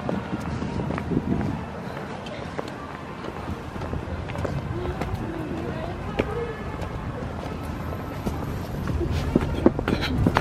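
Footsteps on a paved walkway with indistinct voices, over steady outdoor background noise.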